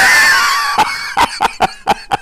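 A man laughing hard: a loud, high-pitched laugh that after about a second breaks into short breathy bursts, about four a second.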